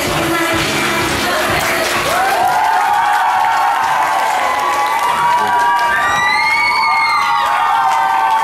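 Dance music ending about two seconds in, followed by a crowd of children cheering, with long, high, wavering shouts.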